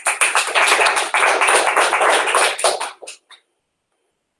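Audience applauding, dying away after about three seconds into a few last separate claps.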